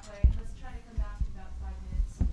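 Indistinct talking of people close by, with several short low thumps from a table microphone being handled.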